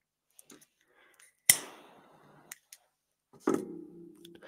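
A few small clicks and one sharper click about one and a half seconds in, with a short decaying tail, then a brief hummed voice sound near the end.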